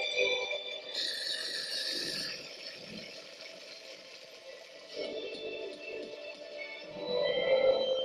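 Video slot machine playing its electronic free-spins bonus music and reel sound effects, with a short noisy effect about a second in. The sound rises to a louder stretch near the end as a small line win comes up.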